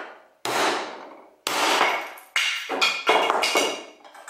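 Hammer blows on a 3D-printed plastic bracket clamped in a metal vise, struck harder and harder to break it in a strength test. Three blows come about a second apart, each ringing briefly, then a quicker run of knocks and rattling near the end.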